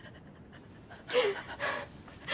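A woman's distressed, ragged breathing: after a quiet second, a short sobbing gasp with a falling pitch, then a hard breath out.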